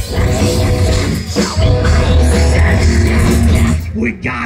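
Live rock band playing loud, with guitar and bass holding sustained chords over a heavy low end; the music dips briefly near the end.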